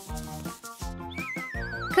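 Light background music, joined about halfway through by a single wavering, downward-gliding whistle-like sound effect.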